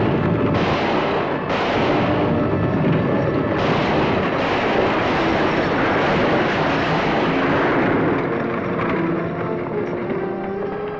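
Many horses galloping with a stagecoach in a dense, unbroken rumble of hooves and wheels, with a few shots in the first four seconds. Background film music comes up near the end.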